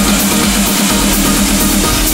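Vocal trance music: an electronic dance track with a synth note pulsing evenly, about eight times a second, over a full mix.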